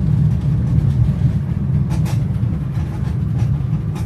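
A car driving, heard from inside the cabin: a steady low rumble of engine and road noise.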